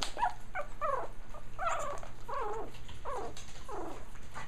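Young Japanese Chin puppies barking: a string of short, squeaky calls that rise and fall in pitch, about two a second.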